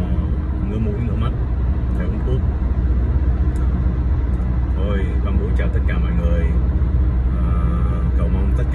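Steady low road and engine rumble inside the cabin of a car moving at highway speed.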